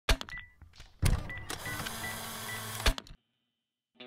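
Opening sound effects: a few sharp clicks, then a loud mechanical-sounding whirr with short high beeps in it that cuts off abruptly after about three seconds.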